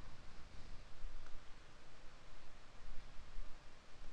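Quiet room tone: a low, steady hiss of microphone and background noise, with no distinct sound standing out.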